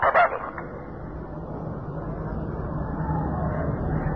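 Hiss and rushing noise from a telephone line with a faint low hum, swelling slowly during a pause in speech.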